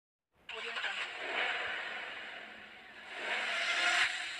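Car engine sound effect: a noisy engine rush that starts suddenly about half a second in and swells twice, the second swell louder near the end.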